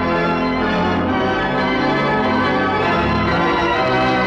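Wurlitzer theatre pipe organ playing full sustained chords, the bass notes changing about a second in and again near three seconds.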